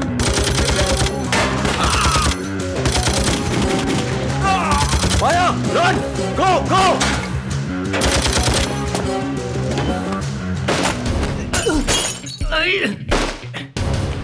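Rapid bursts of submachine-gun and pistol fire over loud action music.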